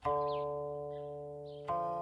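Guqin, the Chinese seven-string zither, being plucked: a note rings out and slowly fades, and a second note is plucked about a second and a half in.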